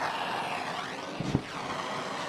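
Hand-held gas torch burning steadily against a cast differential carrier, heating it to burn off leftover oil and brake cleaner before the gears are welded. About a second in there is a brief low whump as brake cleaner residue on the table catches fire.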